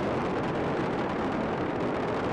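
Space Shuttle Atlantis's two solid rocket boosters and three main engines firing during ascent, a steady, even rumble with no breaks.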